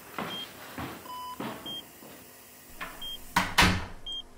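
Hospital patient monitor beeping in short high tones about every second and a half, with a lower tone about a second in. Soft rustling rushes of noise run between the beeps, and a louder rush of noise comes near the end.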